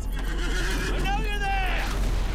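A high, drawn-out cry that starts about half a second in, swells and falls away over about a second, over a steady low rumble.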